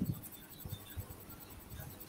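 Faint handling noise: a few soft low thumps, about one near the start and two more around the middle, with light rustling between.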